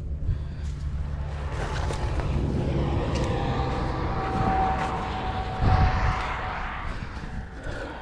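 A motor vehicle passing by, its engine and road noise swelling over the first few seconds and fading away near the end.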